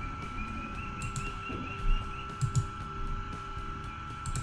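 Faint background noise of a desk recording with a steady high electrical whine, and a few soft clicks of a computer mouse.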